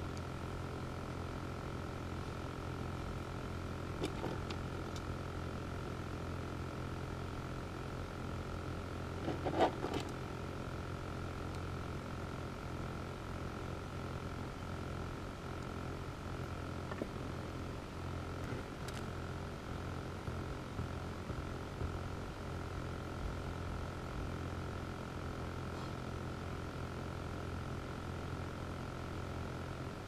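Low, steady electrical hum with a faint, steady high-pitched whine, broken by a few faint clicks from handling wires on the bench.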